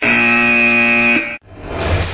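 Wrong-answer buzzer sound effect, one steady blaring tone of about a second and a half that cuts off suddenly, marking the answer as a fail. A rising rush of hiss follows and levels off into steady noise.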